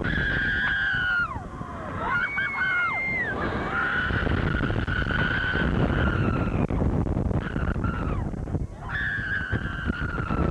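People screaming on a roller coaster: several long held screams, some overlapping, each dropping in pitch as it tails off, over heavy wind rumble on the microphone.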